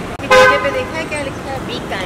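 A short vehicle horn honk, one steady note, starts about a third of a second in and is the loudest sound, over street noise and voices.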